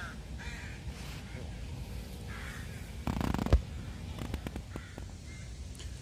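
A few harsh, cawing bird calls, with a short rustle and a sharp click about three seconds in, then a few faint clicks.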